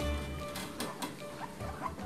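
Background music that thins out about half a second in, under a guinea pig gnawing at a whole watermelon's rind: a few short clicks and faint squeaks.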